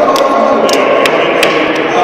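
Echoing hubbub of an indoor athletics hall, with a steady murmur of voices and about five sharp clicks scattered through it.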